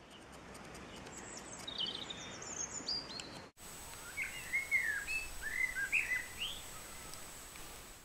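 Birds chirping and singing over a steady background hiss, with short, quick chirps. The sound breaks off abruptly about halfway through, and lower-pitched chirps follow.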